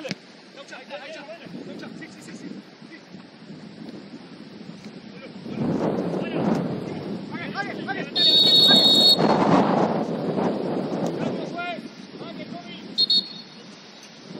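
Referee's pea whistle: a shrill one-second blast about eight seconds in, and a short blip near the end, over players' shouts and wind on the microphone.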